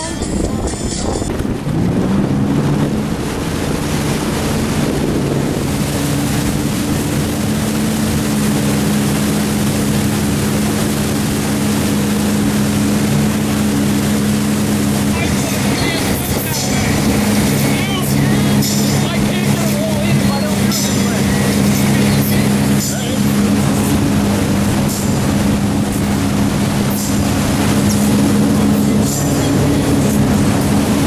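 Wake boat's inboard engine running under load at a steady pitch, with rushing water and wind noise. The drone settles in and rises slightly in pitch about a second and a half in, then holds steady.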